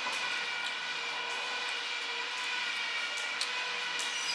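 A steady hum made of several high steady tones, with a few faint clicks of a dog's claws on a laminate floor.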